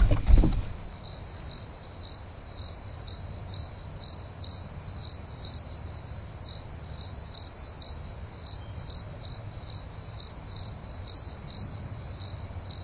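Crickets chirping at night in a steady, even rhythm of about three short chirps a second.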